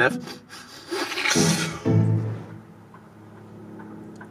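A man taking a long sniff through his nose at a cup of freshly brewed coffee, with a short low vocal sound just after it.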